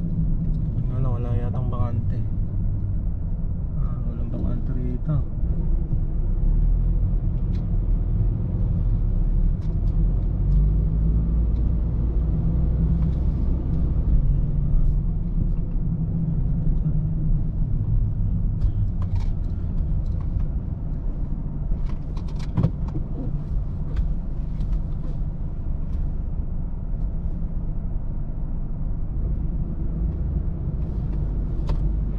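Steady low rumble of a car driving slowly, engine and tyre noise heard from inside the cabin, with a few scattered light clicks.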